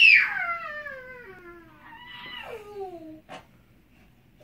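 A small child's high-pitched squeals: two long calls, each sliding down in pitch, the first loud at the start and a quieter one about two seconds in, then a short click near the end.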